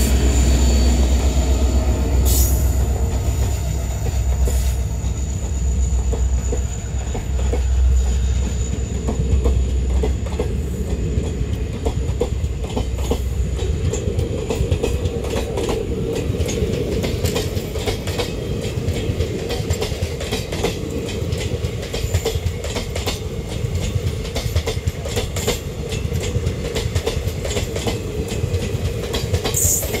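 WDP4D diesel-electric locomotive, with its EMD 16-cylinder two-stroke engine, passing close under acceleration: a deep engine throb that fades after about fifteen seconds. ICF passenger coaches then roll by, their wheels clacking over rail joints, and a steady wheel squeal comes in.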